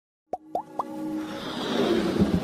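Intro jingle sound effects: three quick pops, each rising in pitch, about a quarter of a second apart, followed by a building swell of noise.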